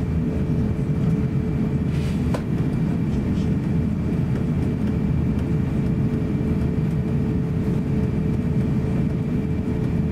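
Steady cabin noise of an Airbus A350-900 taxiing: a low rumble with a steady hum over it. A faint click comes about two seconds in.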